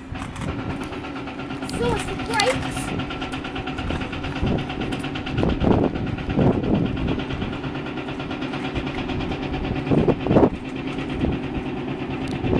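Diesel construction machinery running steadily, with a constant droning engine tone, and louder swells a few times. Voices come through now and then.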